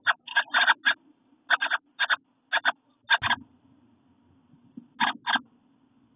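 Wrens inside a nest box making short raspy scratching sounds, mostly in pairs, about a dozen over the first three and a half seconds, then one more pair about five seconds in.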